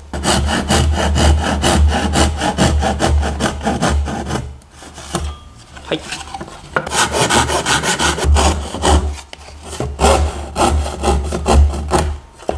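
Japanese pull saw cutting through a thin wooden panel in quick, even strokes, trimming it flush along the side of a wooden drawer box. The sawing pauses for about two seconds near the middle, then resumes.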